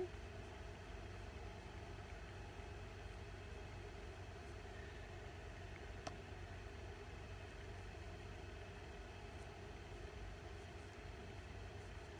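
Faint steady room tone: a low hum and light hiss, with one small click about halfway through.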